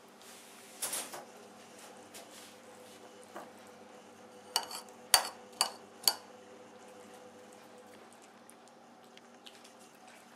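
A white china saucer clinks against a wooden table while a cat eats melon from it: a soft rustle about a second in, then four sharp, ringing clinks about half a second apart, midway through.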